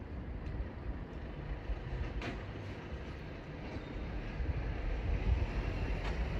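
JLG 10RS electric scissor lift running as the platform rises: a steady low rumble, with one brief sharp click about two seconds in.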